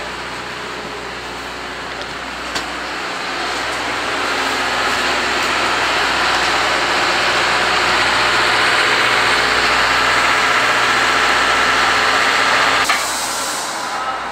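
Loud steam hiss from the C58 steam locomotive that builds over several seconds, holds steady, then cuts off suddenly near the end, over a steady low hum.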